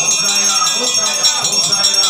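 Temple bells ringing continuously, with a mix of voices singing or chanting.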